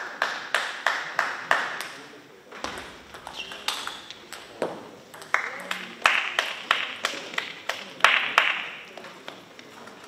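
Table tennis ball bouncing in quick light clicks, a few per second. The clicks pause for a moment in the middle and stop near the end, with faint voices in the hall.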